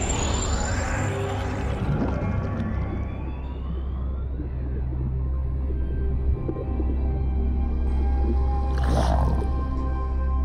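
Underwater-themed cartoon score: a deep, steady drone with whale-like calls, a faint rising glide a few seconds in, and a brief louder swell near the end.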